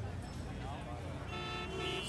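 Low, steady city traffic rumble, with a vehicle horn sounding one held note from about a second and a half in.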